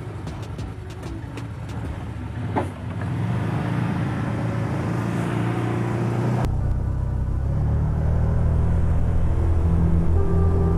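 Side-by-side UTV's engine running as it pulls away, with a few light clicks from the gear shifter at first. The engine drone then builds and grows louder as the vehicle accelerates.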